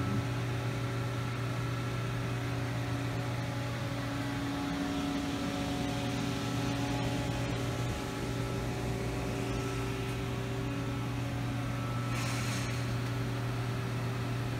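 Steady hum of a powered-up, idling Haas MDC 500 CNC mill-drill centre: a low, even drone with several faint steady tones above it. A brief hiss comes about twelve seconds in.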